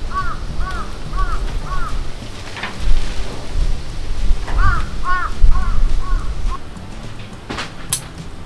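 A crow cawing in two runs: four caws about half a second apart, a pause, then five more, the last ones fainter. A low rumble runs underneath, and a couple of sharp clicks come near the end.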